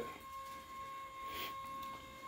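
Electric motor of a Tempur-Pedic adjustable bed base running as it raises the foot section: a faint, steady whine.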